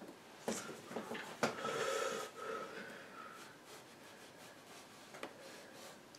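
A couple of light taps, then a person's noisy breath lasting about a second.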